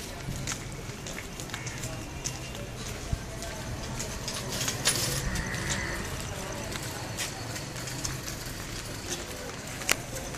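Street ambience in a market lane: footsteps on a dirt path, clicking every half second to a second, over a steady low hum and faint, indistinct voices.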